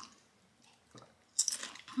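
A crunchy corn tortilla chip being chewed, very quiet at first, with a louder noisy crunch in the last half second.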